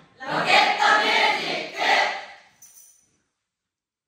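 A large group of young voices calling out together in unison for about two seconds, then silence.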